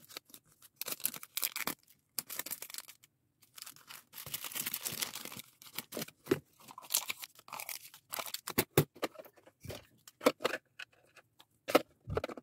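Clear plastic packaging bags crinkling and rustling in the hands as small items are bagged. There is a longer stretch of rustling about four seconds in, and sharper light taps and clicks of small items toward the end.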